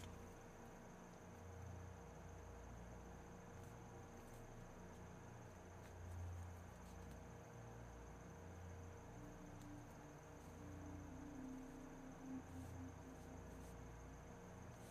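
Near silence: room tone with a faint steady high whine and a low hum.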